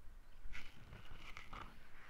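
Faint footsteps and rustling handling noise, a few soft scattered clicks over a low rumble, as the person filming moves through the garden.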